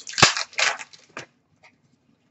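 2019-20 Upper Deck SP Authentic hockey cards being handled: a sharp tap about a quarter of a second in, then a few short rustles and snaps of card stock over the next second.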